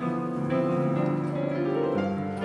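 Piano playing slow classical class accompaniment, sustained chords with a new chord struck as it begins.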